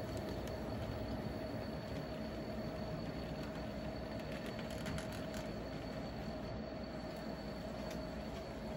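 An N scale model switcher locomotive running along the track with a string of tank cars. It makes a steady, even whine of its small motor and wheels, with a few faint clicks about five seconds in.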